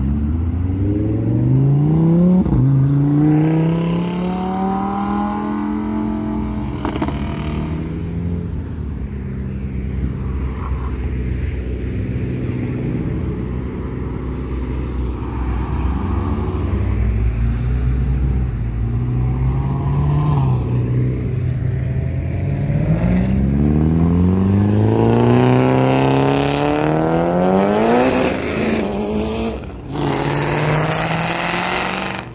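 Performance car engines accelerating hard: a Lamborghini Huracán's V10 revs climb steeply as it pulls away, then ease off. Further cars follow, with another engine's revs rising steeply near the end.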